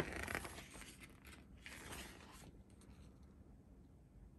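Pages of a paper rules booklet being turned by hand: a faint rustle and swish of paper lasting about two and a half seconds.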